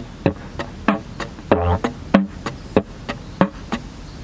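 Didgeridoo played with beatbox technique: a low drone note about a second and a half in, and between drones a steady run of sharp hi-hat 'ts' clicks and short 'toot' pops at about three strokes a second. The hi-hat clicks are sounded firmly, which makes the beat stand out.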